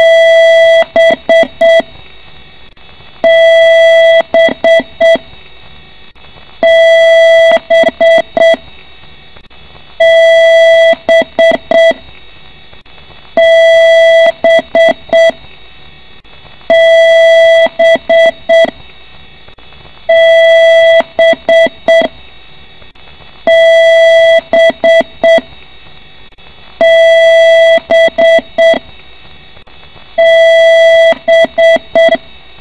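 A PC's internal speaker sounding a repeating BIOS beep code during the power-on self-test: one long, loud beep followed by a quick run of short beeps, the pattern coming back about every three and a half seconds. A low steady hum sits between the beeps. Repeating long-and-short beeps like these are the pattern of a BIOS error beep code.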